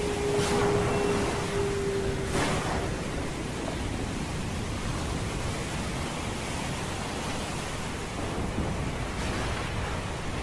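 Steady rushing noise of an intro sound effect, with two brief whooshes and a held tone in the first few seconds that fades out about two and a half seconds in.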